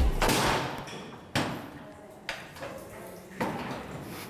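A few sudden thumps, about a second apart, each trailing off in a short rustle.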